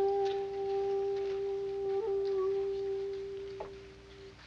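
Shakuhachi bamboo flute holding one long, steady note, with a small flick in pitch about two seconds in, then fading away over the last second.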